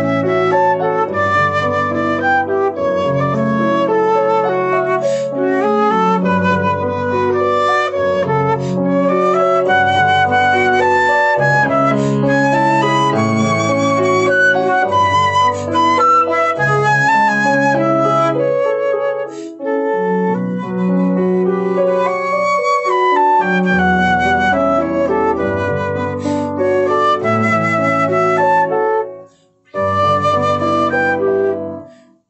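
Silver concert flute playing a gentle berceuse melody over a lower, sustained accompaniment, with a short breath break just before the end.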